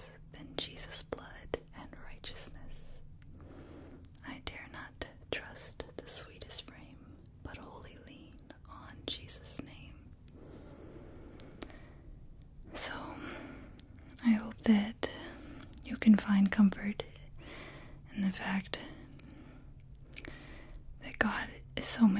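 A woman whispering softly into close microphones, with a few short voiced syllables in the second half.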